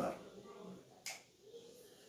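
A man's voice trails off at the start. About a second in comes a single short, sharp click, and then quiet room tone.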